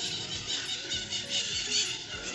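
Small birds chirping and twittering, a busy scatter of high-pitched calls.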